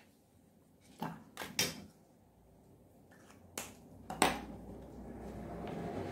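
Several sharp taps and clicks as a stiff pattern template and fabric are handled on a cutting mat, the loudest about four seconds in, followed by a soft, steady rustle of fabric being handled.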